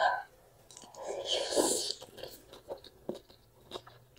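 A person slurping a mouthful of thukpa noodles about a second in, with a rush of sucked-in air, then chewing with a string of short wet clicks.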